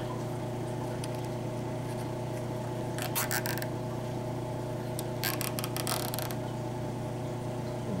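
Nylon zip tie being pulled through its locking head twice: a short ratcheting zip about three seconds in and a longer one about five seconds in, over a steady low hum.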